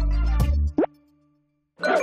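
The end of a TV show's theme jingle with a heavy bass beat. It stops just under a second in with a short upward-gliding sound effect. About a second of near silence follows, and a new sound starts near the end.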